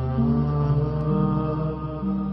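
Nasheed-style chanting: long held vocal notes over a steady low drone, the melody stepping from one pitch to the next every half second or so.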